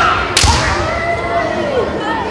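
A single sharp crack of a kendo strike, bamboo shinai with a foot stamp on the wooden floor, about half a second in. Long rising-and-falling kiai shouts echo around a large hall.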